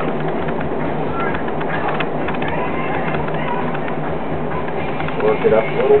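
Potter's wheel running steadily, a low even hum under a constant hiss.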